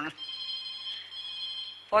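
Telephone ringing: a high-pitched ring that sounds for almost two seconds, with a brief break about a second in.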